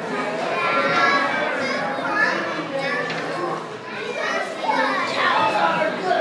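Young children's high voices talking and calling out over one another during play.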